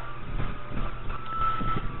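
Faint background noise in a pause between sentences, with a faint steady high tone in the second half.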